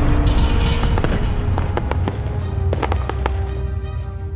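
Logo-reveal intro sound effect: a low rumbling tail with scattered crackles and sparkly clicks, fading out toward the end.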